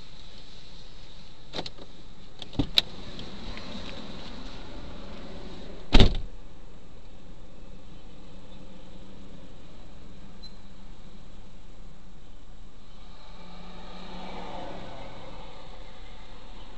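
Car door being opened and slammed shut: a few clicks and knocks about two seconds in, then one loud thump about six seconds in, heard through a dashcam inside the stopped car. A passing car is heard near the end.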